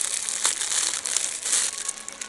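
Plastic-wrapped packs of dish sponges crinkling and rustling as they are handled and pulled from a shelf, a dense run of crackles.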